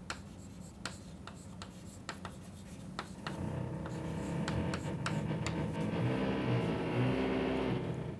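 Chalk tapping and scraping on a blackboard as a word is written in capital letters. A low steady hum comes up about three seconds in and grows louder.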